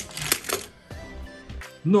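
Hard plastic clicking and rattling as a hand works die-cast toy cars loose inside a Hot Wheels plastic track set: a sharp click at the start, then a short clatter and a few faint ticks.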